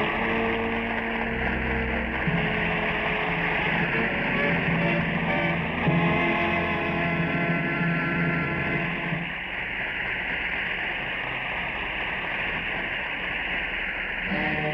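Orchestra playing the closing theme of a 1940s radio comedy show, with long held notes and the thin sound of an old broadcast recording.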